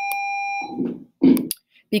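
A steady electronic beep, one unbroken tone, that cuts off under a second in, followed by a brief low sound of a voice.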